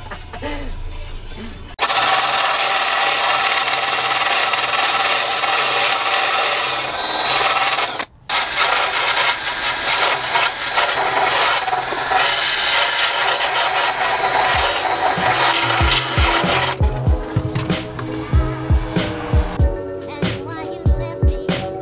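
Angle grinder grinding the car's sheet-metal floor: a steady run that stops briefly about eight seconds in, then runs on. Background music with a beat takes over for the last few seconds.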